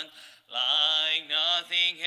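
A man singing a slow hymn alone and unaccompanied, holding long notes. He stops briefly for a breath near the start, then sings on.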